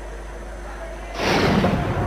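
Broadcast replay-transition sound effect: a loud whoosh that begins a little past halfway and lasts about a second, after a faint, steady background.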